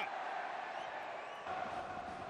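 Steady crowd noise from a packed football stadium: many voices blended into an even roar.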